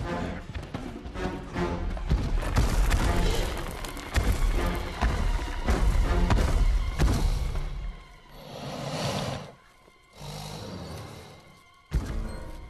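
Film chase soundtrack: loud music mixed with heavy crashes and thuds as wreckage is smashed. It eases off about eight seconds in and nearly drops away twice near the end.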